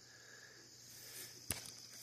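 Faint, steady high-pitched chirring of insects such as crickets, with one sharp click about one and a half seconds in.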